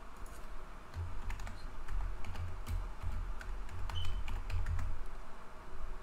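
Typing on a computer keyboard: a run of irregular key clicks. A low hum sits underneath from about a second in until about five seconds.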